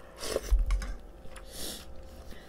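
Quiet eating noises at a dinner table: a short mouth sound, a soft low bump about half a second in, then a brief rustle near the end.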